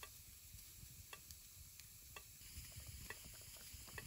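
Faint crackling from a bed of glowing campfire coals: scattered, irregular small pops over near silence.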